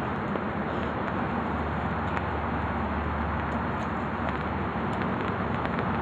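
Steady outdoor background noise with a low hum, like distant road traffic, with no distinct events standing out.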